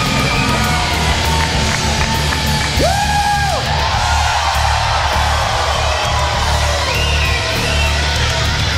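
Heavy rock wrestling entrance music with a steady driving beat, over an arena crowd cheering and yelling, with one loud held yell about three seconds in.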